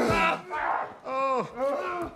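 Men yelling and groaning with effort in a bare-handed fight, with one long arching yell about a second in.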